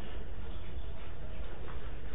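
Steady hiss and low hum of a lecture audio recording during a pause in speech, with a couple of faint ticks.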